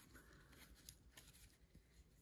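Near silence, with a few faint soft ticks of paper trading cards being slid and shuffled in the hands.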